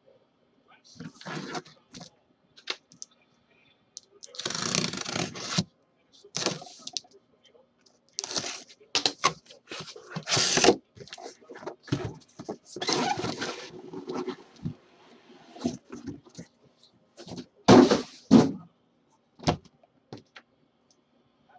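Cardboard shipping case being opened by hand: irregular tearing and scraping noises, the longest about five seconds in, with sharp knocks in between as the boxes inside are handled and pulled out.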